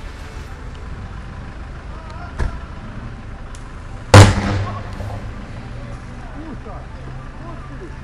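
A sharp crack about two seconds in, then a very loud bang of an electrical flashover on an electric locomotive's roof about four seconds in, dying away over half a second into a steady low hum. It is the arc of a pantograph raised onto a catenary of the wrong voltage on an old locomotive with no voltage sensor, which puts the train out of service.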